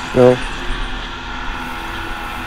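Go-kart running on track, heard through its onboard camera: a steady hum with faint steady tones.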